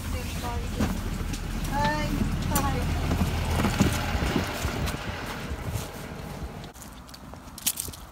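School bus engine running with a low rumble under background voices of children; the rumble drops away about five seconds in, leaving quieter outdoor sound with a couple of clicks near the end.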